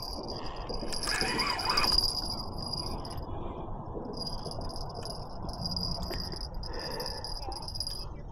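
Steady high-pitched insect buzz that drops out briefly now and then, over a low rushing noise. A short wavering call or voice sounds about a second in.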